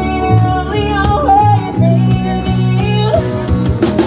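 Live country band performing: women's voices singing over electric guitar, bass and a drum beat.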